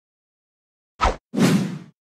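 Two sound effects for an animated logo. First comes a short pop or thwack about a second in, then a swoosh that fades away within about half a second.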